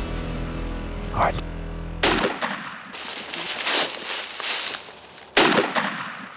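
Electronic background music with a deep bass, cut off about two seconds in by a shotgun blast at a turkey, followed by a second loud blast some three and a half seconds later.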